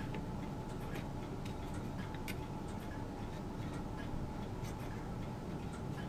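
Faint, irregularly spaced light clicks of small plastic model parts being handled and pressed together as pegs are worked toward their slots, over a steady low room hum.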